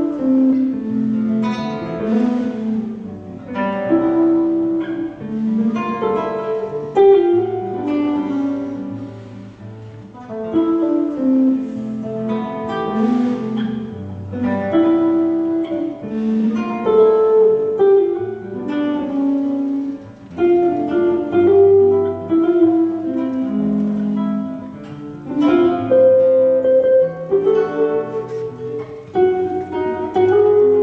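Nylon-string classical guitar and electric bass playing an instrumental Brazilian jazz piece live, the guitar picking melody and chords over low bass notes.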